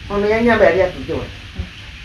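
An elderly woman's voice speaking for about a second, then pausing, over a steady crackly background noise in the recording.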